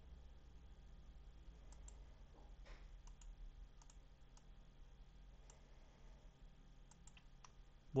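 Faint, scattered clicks of a computer mouse, a dozen or so spread irregularly, over a low steady hum.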